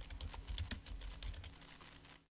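Computer keyboard typing: a run of quick, faint keystrokes that thins out toward the end.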